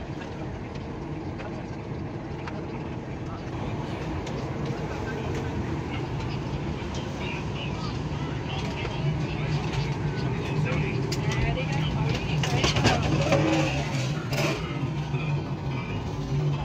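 Airliner cabin during boarding: a steady low hum from the cabin air system under indistinct passenger chatter. Occasional knocks, with the chatter and knocks growing busier in the second half.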